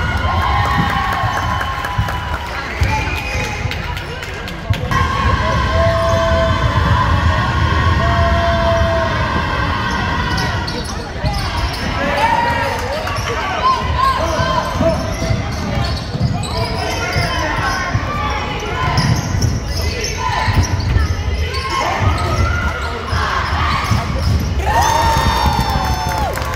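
Basketball game in a gym: a ball being bounced and dribbled on the hardwood floor, under steady chatter and calls from players and spectators.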